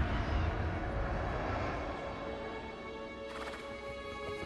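Film soundtrack: the din of a charging herd of mounted beasts, with animal cries and hoofbeats, fading away over the first two seconds as film score music comes up in long held notes. A short rustling flurry sounds near the end.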